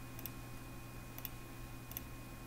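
Computer mouse button clicking three times, about a second apart, each a quick press-and-release double tick, over a steady low electrical hum.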